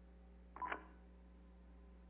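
Steady low electrical hum of the meeting's audio feed, with one short pitched sound about half a second in.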